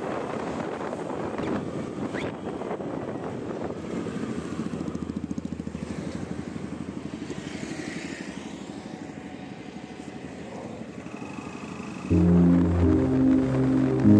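A motorbike running while riding along a road, its engine pulsing under steady road noise. About twelve seconds in, background music starts suddenly and becomes the loudest sound.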